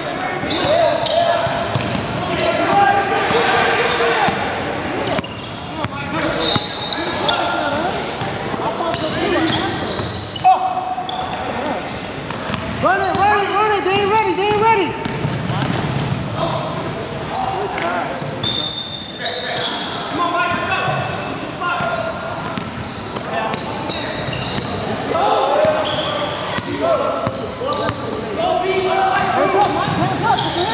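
Pickup basketball game in a large gym: a ball bouncing on the hardwood court and the short knocks of play, under the players' indistinct voices calling out.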